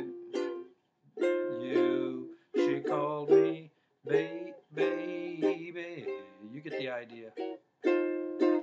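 Ukulele strummed in chords, short runs of strums with two brief pauses, the chords ringing between strokes.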